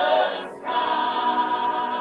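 A choir singing sustained chords, with a short dip about half a second in, then a high note held steadily.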